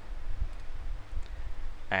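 Computer mouse clicking faintly over a steady low hum.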